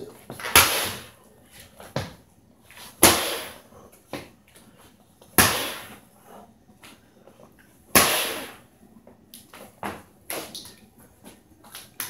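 Plastic water bottle of frozen water knocked hard against a countertop four times, about every two and a half seconds, each knock trailing off over about a second, with lighter taps and clicks between; the blows are breaking up the ice inside.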